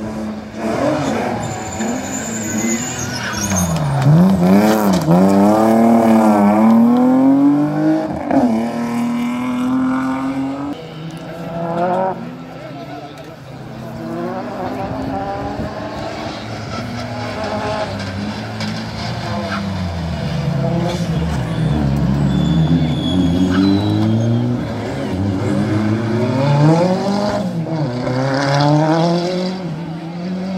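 Rally car engine revving hard through the gears, its pitch climbing and dropping back again and again with each shift and lift; the revving is loudest from about four to eight seconds in and builds again toward the end.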